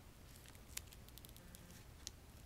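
Near silence with a few faint crinkles of a candy bar's foil wrapper shifting in the hand, the clearest about three-quarters of a second in.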